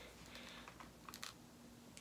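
Faint small clicks and ticks from a sandal's metal strap buckle and strap being handled and pulled loose by hand, a few scattered clicks in the middle and one near the end.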